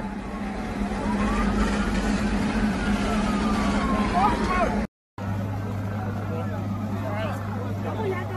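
Outdoor noise with faint voices of onlookers over a steady low hum. A faint, long wail rises and then slowly falls during the first half. The sound cuts out briefly about five seconds in and returns with a deeper steady hum.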